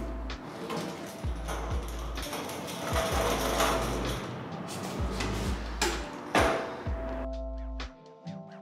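Chain hoist on a gantry crane running, a busy mechanical whirring rattle with clicks that stops about seven seconds in, heard over background music with a steady low beat.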